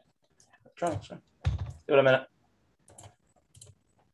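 A person's voice over a video call: two short voiced sounds about one and two seconds in, too brief to be words, then a few faint clicks near the end.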